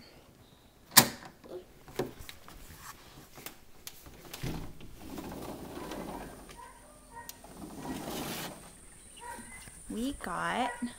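A door being unlatched and opened to step outside: a sharp click about a second in, a lighter click a second later, then rustling handling noise as the door is pushed open and walked through.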